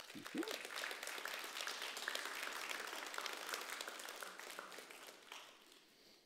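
Audience applauding: a crowd of clapping hands that starts all at once, holds for about four seconds, then dies away near the end.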